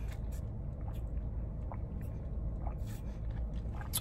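Low steady hum of an idling car, with a few faint clicks and small handling noises.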